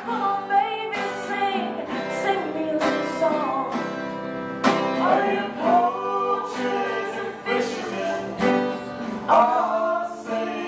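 A woman singing a song live to a strummed acoustic guitar, with a man's voice joining her in the second half.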